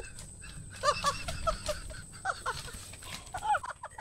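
An animal's short, repeated cries, each rising and falling in pitch, coming in quick uneven runs.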